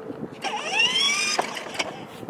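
Battery-powered ride-on toy car's electric drive motors and gearbox whining, with the whine sweeping up in pitch as the car pulls away about half a second in. A couple of sharp clicks come near the end.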